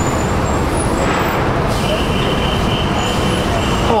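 Steady street traffic passing close by, cars and engines with tyre noise, and a high steady tone that comes in about halfway through and holds for about two seconds.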